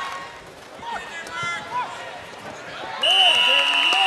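Scattered shouts from players and spectators during a flag football play in an indoor arena. About three seconds in, the noise jumps as a long, high, shrill tone starts over crowd noise.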